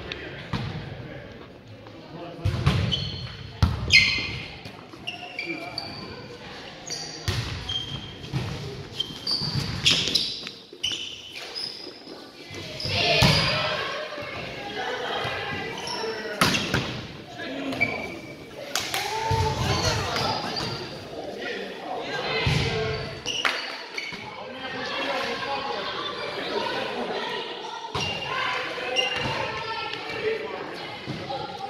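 Indoor volleyball play on a wooden gym floor: a series of sharp smacks as the ball is hit and bounces, with players' voices and short high sneaker squeaks, all echoing in the hall.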